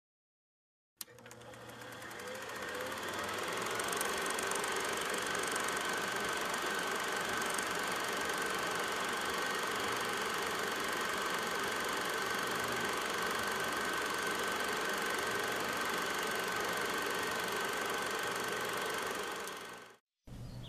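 A steady mechanical running sound, like a motor, with a steady high whine over a low hum. It starts with a click about a second in, fades up over the next few seconds and stops near the end.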